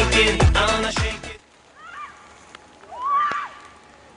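Upbeat music with a beat that cuts off suddenly about a third of the way in, followed by two short high-pitched vocal cries from a person, the second one longer and louder.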